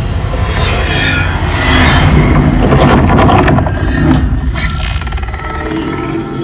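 Cinema sound system playing the loud logo-intro soundtrack: heavy deep rumble with swelling whooshes, loudest two to three seconds in, then easing into steady held tones as the logo settles.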